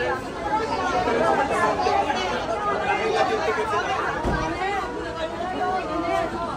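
Crowd chatter: many people talking at once, with several voices overlapping at a steady level and no single speaker clear.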